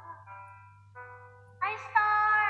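A woman singing over backing music; after a few softer held notes, a louder sung phrase starts near the end. A steady low hum runs underneath.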